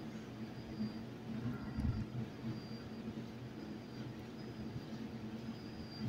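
Quiet background noise of a room: a steady low hum with a faint, thin high tone above it, and no speech.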